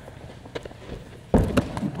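Light footsteps and taps, then about a second and a half in a sudden dull thump as a boy's hands and body hit a padded foam block in a parkour wall spin, with a couple of softer thuds right after.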